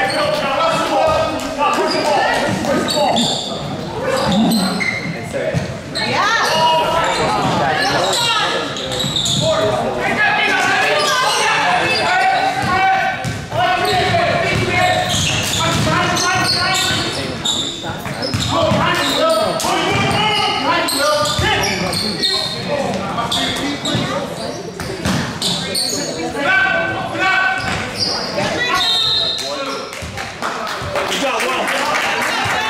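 A basketball being dribbled on a hardwood gym floor while players and spectators talk and call out, all echoing in a large gymnasium.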